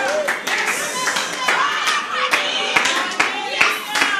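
Congregation clapping, with scattered voices calling out in response.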